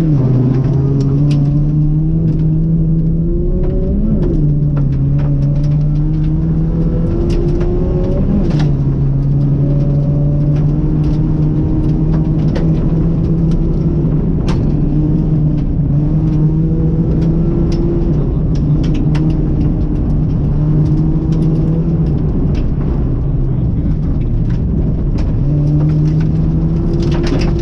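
Ford Puma rally car's engine heard from inside the cabin, revs climbing and then dropping at upshifts about four and eight seconds in, then holding fairly steady revs with brief lifts. Scattered sharp clicks and knocks sound over the engine throughout.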